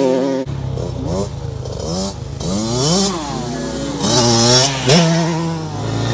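Dirt bike engines revving as they ride, the pitch rising and falling several times as the throttle is opened and closed.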